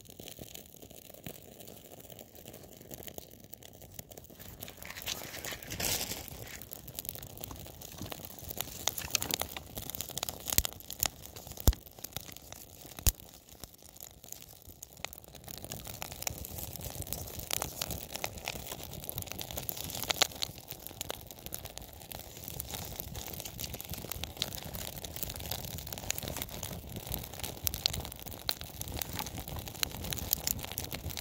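A roll of birch bark, lit with a match, burning and crackling in a stack of wet logs. The crackle grows louder from about five seconds in, with a few sharper pops near the middle.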